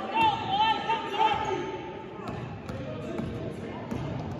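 A basketball being dribbled on a gym floor: a few separate bounces in the second half, with shouting voices in the first second.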